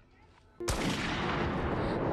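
Gunfire on a film soundtrack, starting suddenly a little under a second in after a near-quiet pause and carrying on as a continuous loud din of shots.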